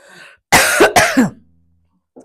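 A woman coughing to clear her throat: two coughs about half a second apart, starting about half a second in.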